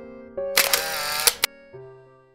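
Camera shutter sound effect about half a second in: a sharp click, a brief burst of noise, then a second click, over soft piano background music that fades away.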